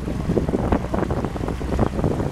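Wind buffeting the microphone in gusts over the rush of water past a moving boat's hull.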